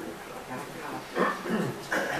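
A man's brief, low, wordless murmur about a second in, over quiet room tone.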